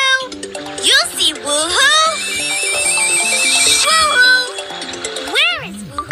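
Children's cartoon soundtrack: playful background music with a high, twinkling shimmer in the middle, and high voices calling out with pitch that glides up and down near the start and again near the end.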